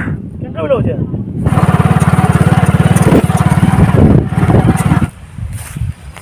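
An engine running with a fast, even beat, starting abruptly about a second and a half in and cutting off suddenly about five seconds in, with a voice over it.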